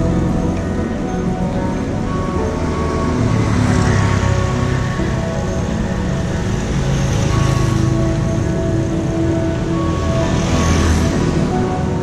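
Background music of long, held notes over a steady low rumble of wind and road noise from riding.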